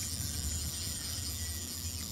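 Boat's outboard motor running steadily at trolling speed, a low, even hum.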